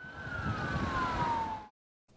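Roadside traffic noise with a single clear tone sliding steadily down in pitch, cut off abruptly near the end.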